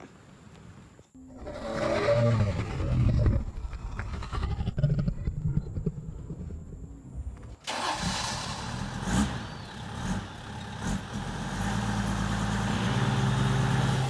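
A vehicle engine starting up about a second in and running unevenly. About eight seconds in it gives way abruptly to a steady hiss and a low, steady hum.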